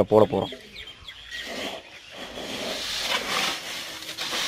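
Dry paddy seed rustling and hissing as a hand scoops and stirs through it in an aluminium basin, swelling about three seconds in.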